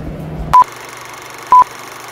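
Film-leader countdown sound effect: two short, loud single-pitch beeps about a second apart over a steady hiss. Background music cuts off just before the first beep.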